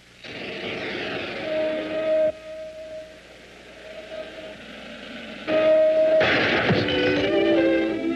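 Film sound effect of a small model rocket firing off with a hissing whoosh that starts abruptly and falls in pitch, then a second louder hissing burst about six seconds in as it flies wildly around the room. Music plays along, taking over near the end.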